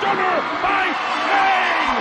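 A man's voice, the television commentator's, over the steady noise of an arena crowd.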